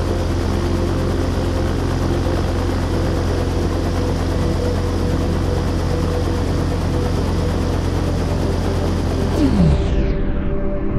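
A ring of electric box fans blowing a kerosene fire tornado: a steady rushing of air and flame over a low hum. It is cut in just before the start with a rising sweep and cut out with a falling sweep near the end, with faint soundtrack tones beneath.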